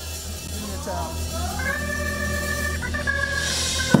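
Church keyboard playing an organ sound: sustained held chords over a steady bass, sliding up into a long chord about a second in, with a sharp knock just before the end.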